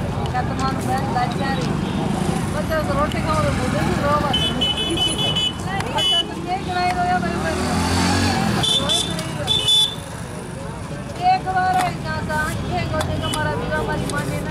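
Busy outdoor ambience: background voices chattering over a steady rumble of traffic. Short, high-pitched horn beeps sound several times, including a quick run of four beeps midway.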